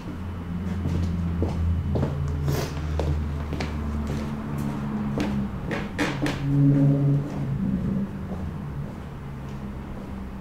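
Scattered knocks and clicks of a person moving about a workshop, carrying a freshly poured resin board away, over a low droning hum that shifts in pitch a few times.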